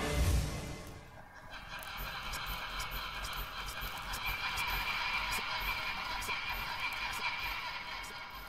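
Electronic outro sound: a short whooshing swell in the first second, then a steady hissing, crackling static texture with faint clicks, easing off near the end.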